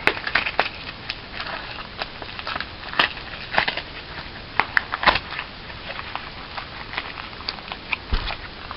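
Foil Pokémon booster pack wrapper being crinkled and torn open by hand: an irregular string of crackles and clicks, the sharpest about three and five seconds in.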